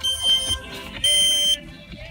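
Smoke alarm beeping: two high, piercing half-second beeps about a second apart, set off by smoke from cooking.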